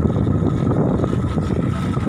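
Motorcycle riding noise: steady wind rushing over the microphone with the motorcycle's engine running underneath.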